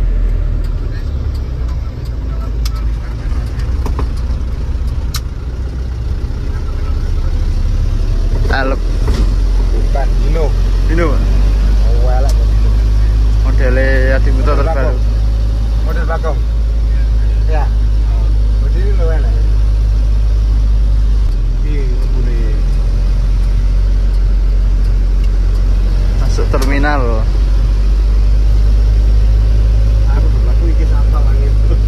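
Mitsubishi Canter diesel engine and road noise heard inside the cab of a moving microbus, a steady low rumble.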